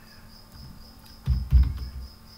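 Computer keyboard keys typed in a quick run of a few heavy strokes in the second half, over a faint, steady, high-pitched electrical whine.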